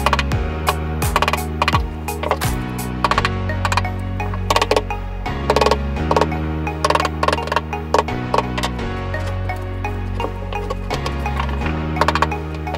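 Claw hammer striking a wood chisel, chopping recesses into a wooden piece: many sharp, irregular knocks, over background music with held bass notes.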